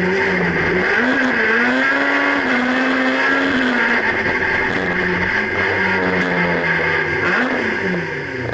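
Honda Civic race car's four-cylinder engine heard from inside its stripped cabin, running hard under throttle. Its pitch climbs about a second in, holds, drops near four seconds, then rises and falls again near the end as the driver works the throttle.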